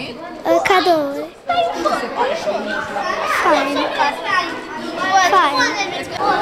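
Children talking and chattering, with high young voices throughout.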